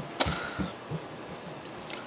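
A single short, sharp click about a fifth of a second in, then quiet room tone, with a fainter click near the end.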